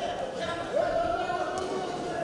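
Men's voices calling out in a large echoing hall during a boxing bout, one call rising in pitch about three-quarters of a second in, with a few dull thuds and a short sharp knock near the end.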